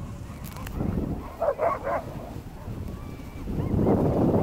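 A husky in the sled team gives a quick run of about three barks about a second and a half in, over a steady low rushing noise from the moving sled. The rush grows louder near the end.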